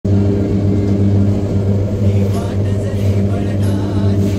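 Papad making machine running with a loud, steady low hum as dough is fed through its extruder.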